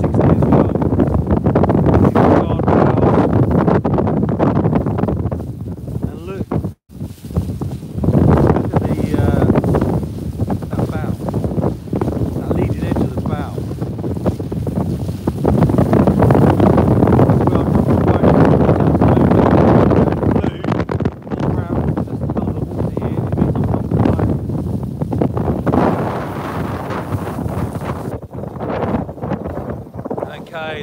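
Strong gusting wind buffeting a phone microphone on the open deck of a power catamaran under way, with water rushing and splashing along the hull. The sound cuts out for an instant about seven seconds in.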